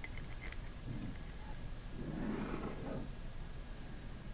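Faint light clicks of cap screws being handled and set against the metal manifold of an air-operated double diaphragm pump, a few in the first half second and another about a second in, then a soft rustling handling noise about two seconds in.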